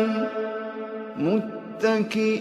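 Quran recitation by a single voice: a long, steady melodic held note ends about a quarter second in. After a quieter pause, a short rising vocal phrase comes about a second in, and the next recited phrase begins near the end.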